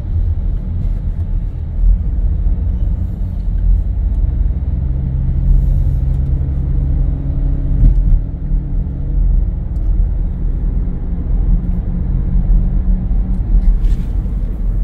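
Low, steady rumble of engine and road noise inside a moving car's cabin, with a steady low hum that holds for several seconds in the middle.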